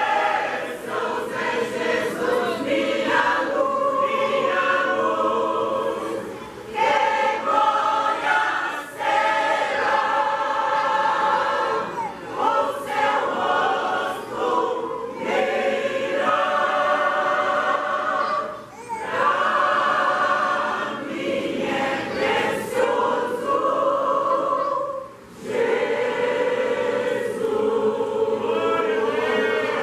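Mixed church choir of women and men singing a gospel hymn together in long sustained phrases, with a few brief pauses between them.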